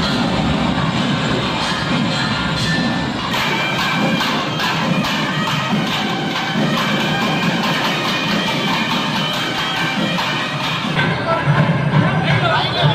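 Tamil temple band playing: thavil drums beat a steady rhythm together with brass horns, over a crowd cheering and shouting. The drumbeats stand out clearly from about three seconds in.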